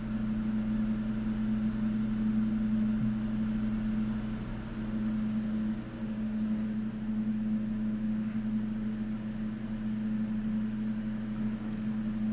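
A steady machine hum, holding a few fixed low tones over a faint hiss.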